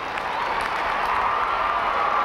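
Large arena crowd applauding and cheering at the end of a gymnastics floor routine, the applause swelling over the two seconds.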